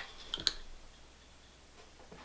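Two or three faint, short clicks about half a second in, then quiet room tone.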